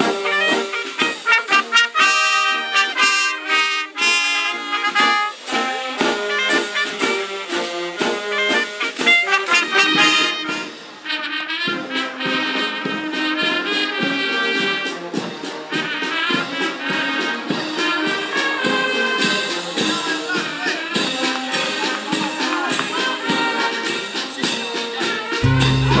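Miners' brass band playing, trumpets, trombones and tubas sounding short notes to a steady beat.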